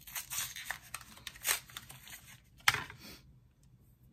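A new mascara's packaging being torn open and handled: short tearing and rustling noises, with one sharp click a little under three seconds in.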